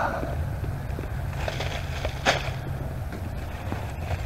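Gloved hands digging and rummaging through dry leaf litter and loose soil, with small scratchy rustles and one sharp click a little past halfway, over a low steady rumble.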